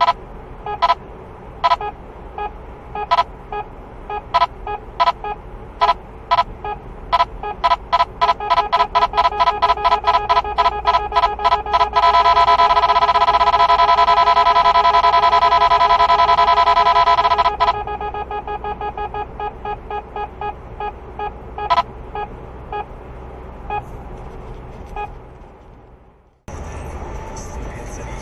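Radar detector alerting to a Ka-band radar signal. Its electronic beeps quicken from about one a second to a rapid stream, then merge into a continuous tone from about twelve seconds in until past seventeen seconds, as the signal grows strongest. The beeps then slow again and fade as the signal weakens.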